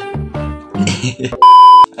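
Dance music with a steady beat that breaks off about two-thirds of a second in. About halfway through it is followed by a very loud, steady bleep tone lasting under half a second, the kind laid over a word to censor it.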